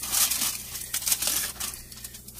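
Aluminium foil crinkling and crackling as it is peeled off the top of a stainless steel pot of steamed rice and peas, once the rice is done.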